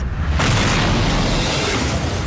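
An explosion sound effect: a sudden blast about half a second in, then a sustained rush of noise over a deep rumble that thins out near the end.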